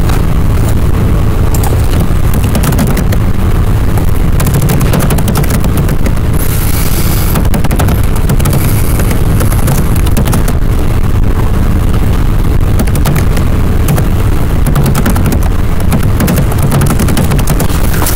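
Loud, steady crackling and low rumble from a faulty microphone, a fault in the recording's audio rather than any sound in the room.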